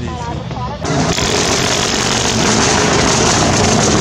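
A man's voice for the first second. Then, from a cut, the loud steady sound of a rally car at speed on a gravel stage: engine and tyres on loose gravel.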